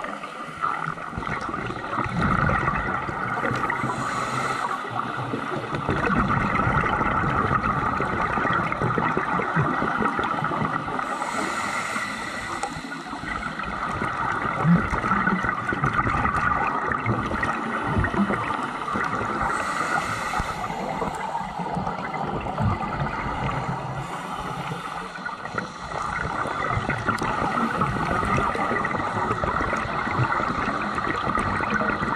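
Muffled underwater noise recorded on a scuba dive, with a diver's exhaled regulator bubbles rushing and gurgling past several times, a few seconds apart.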